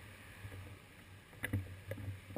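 Low steady hum of cars idling in queued traffic, with a few short sharp knocks about one and a half seconds in and again just before the end.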